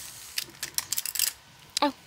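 Plastic marker pens clicking and clattering against each other as a hand rummages through a zippered pencil pouch full of Sharpies: a quick string of light clicks in the first half, then a pause.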